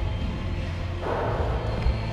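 Foam-pit blocks being handled and stacked: a soft scuffing rustle through the second half, over a low steady hum.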